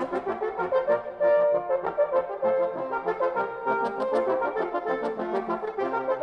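Brass instruments playing lively music, with quick, changing notes and several parts at once.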